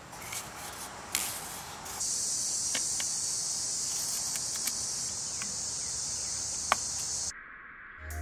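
Steady high-pitched chirring of insects outdoors, with a few light clicks as the trap's PVC end cap is handled; the chirring stops suddenly near the end.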